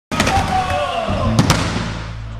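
The audio of a logo intro: a dense, clattery run of sharp clicks and pops with gliding tones. Two sharp cracks come about a second and a half in. Low, sustained music notes start about a second in and hold.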